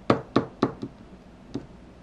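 Small plastic toy figure tapped down on a toy house playset: four quick knocks about a quarter second apart, then one more about a second and a half in.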